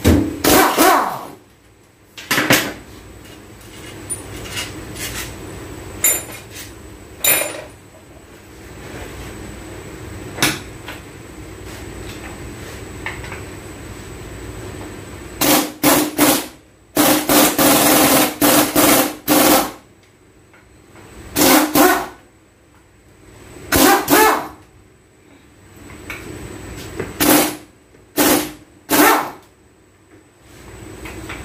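Impact wrench rattling in repeated short bursts on the nut of a transfer case's output flange, a dozen or so bursts from a fraction of a second to about two and a half seconds long, with the longest run near the middle.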